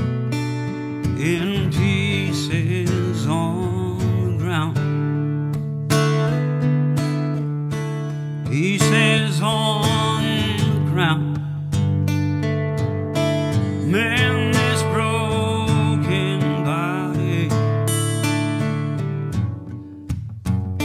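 Acoustic guitar picked and strummed, with a man's voice singing over it in several held, wavering phrases.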